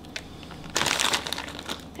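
Crinkling of a pouch of chopped pecans being handled, starting about three quarters of a second in and fading out before the end.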